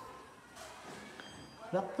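Faint room sound, then a man's voice starting to speak near the end.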